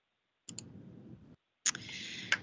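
A few sharp clicks at a computer as the presentation slide is advanced: two quick clicks about half a second in, then another near the end, with stretches of dead silence between.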